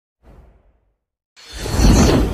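A whoosh sound effect for a logo reveal. A faint brief rustle comes first, then after a moment of silence a full, deep swell builds from about one and a half seconds in and peaks at the end.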